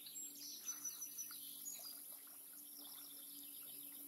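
Faint marsh ambience: a bird chirping with short, high-pitched calls in the first half, over a steady low hum, with a few soft clicks.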